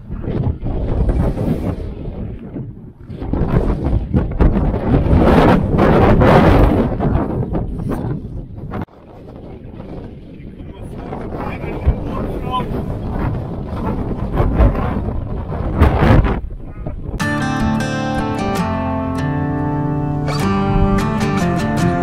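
Strong wind buffeting the microphone in gusts, a loud rushing noise that rises and falls for most of the clip. About three-quarters of the way through it gives way to acoustic guitar music.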